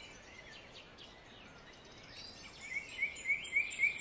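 Almost silent at first, then a small bird chirping faintly in the background from about halfway through: short rising chirps, about four a second.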